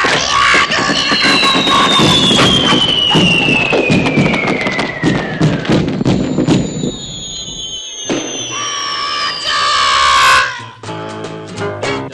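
Cartoon sound effects: a long falling whistle sliding slowly down in pitch over a crackling clatter, then a second, higher falling whistle with a voice crying out near its end. Near the end a plucked guitar theme begins.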